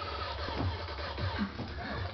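Background electronic music playing quietly, with scratchy rustling from the camera being handled and turned.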